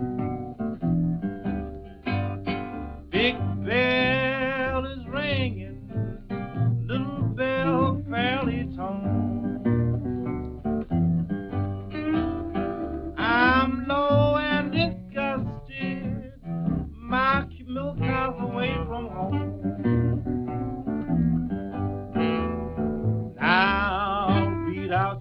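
Small-band blues recording: a lead melody with wide vibrato over plucked guitar accompaniment and a steady low bass pulse.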